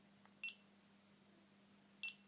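GoPro HD Hero2 camera beeping as its mode button is pressed: two short, high beeps, one about half a second in and one at the end, each marking a step to the next mode, here from video to photo mode.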